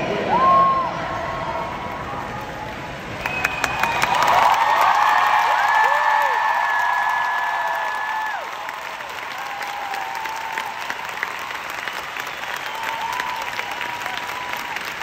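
Arena crowd applauding and cheering at the end of a song, with long, high-pitched screams and shouts riding over the clapping. The clapping and cheering swell about three to four seconds in and ease off after about eight seconds.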